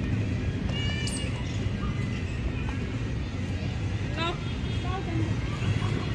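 Outdoor ambience: a steady low rumble with faint distant voices calling out briefly now and then.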